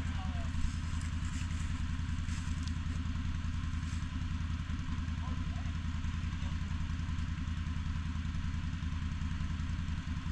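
ATV engine idling steadily, with no revving.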